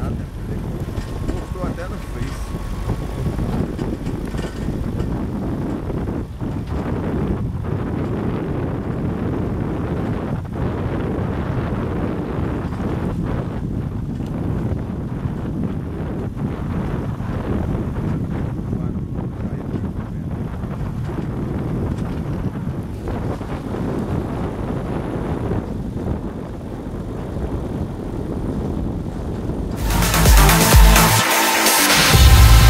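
Vehicle driving along a rough dirt road, a steady low rumble of engine and tyres with occasional knocks from the body and wind buffeting the microphone.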